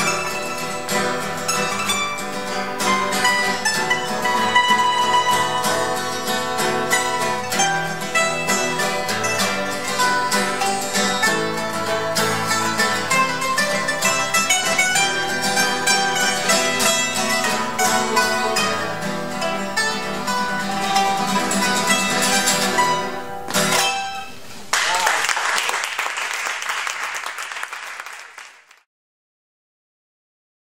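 Ensemble of plucked strings playing an early-music piece: a large lute with an extended bass neck, a small lute-family instrument and a guitar, with dense picked notes. The music stops about 23 seconds in. It is followed by a few seconds of audience applause that fades out.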